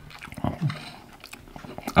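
Someone chewing a mouthful of lasagna, with scattered light clicks of a fork against a plate.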